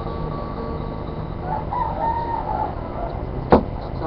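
A single drawn-out call, like a bird's, held for about a second near the middle over steady background noise, and one sharp click near the end.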